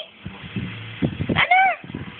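A domestic cat meowing once, a short high call about a second and a half in.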